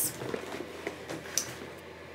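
Faint handling of a cardboard box as it is lowered and set down, with a couple of light ticks and rustles in a small room.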